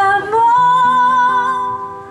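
A woman singing one long held note to acoustic guitar accompaniment; the note fades near the end.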